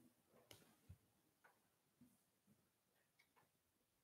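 Near silence: room tone with a few very faint, scattered clicks.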